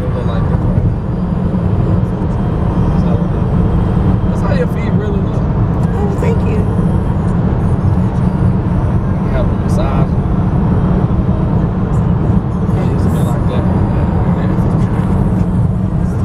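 Steady low road and engine rumble inside a moving car's cabin, with a voice heard faintly now and then.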